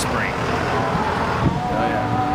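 Steady rumble of street traffic, with a vehicle engine drone holding one pitch from about halfway through.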